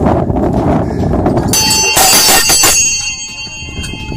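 Small metal summit bell struck about a second and a half in, clanging for about a second and then ringing on as it fades. Before it there is low rustling noise.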